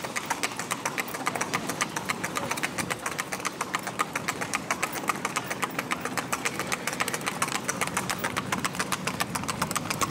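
Hoofbeats of a gaited horse moving at a fast, smooth gait on the road: a quick, even run of sharp strikes, about eight a second. A steady engine hum runs underneath.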